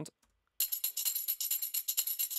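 Sampled tambourine loop playing a fast, even pattern of jingling hits, starting about half a second in.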